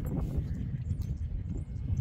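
Uneven low rumble of wind buffeting the microphone, with a faint click about a second in.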